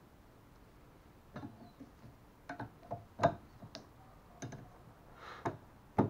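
Windscreen wiper blade being fitted to its wiper arm: a series of light, irregular plastic clicks and knocks as the blade's adapter is handled and clipped onto the arm's hook.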